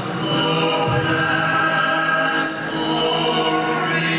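Male vocal quartet singing a cappella in close harmony into handheld microphones, holding long chords that change a couple of times.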